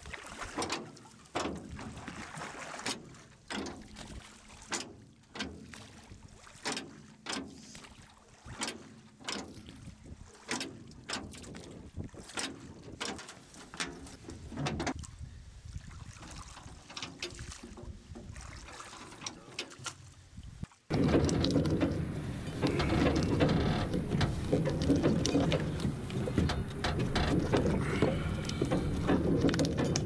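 River ferry sounds: irregular wooden knocks and creaks, roughly one or two a second. About two-thirds of the way in, a sudden, louder, dense rush of sound takes over and holds steady.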